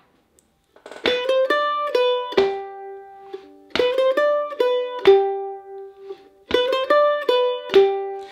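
F-style mandolin playing the same short phrase of an Irish jig three times, each a quick run of plucked notes, picked down, up, down, up, down, that ends on a held note.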